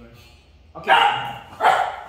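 Small dog barking twice in short, loud barks during play, the first about a second in and the second just over half a second later.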